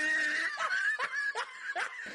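A character's quiet, high-pitched snickering giggle, in a string of short bursts.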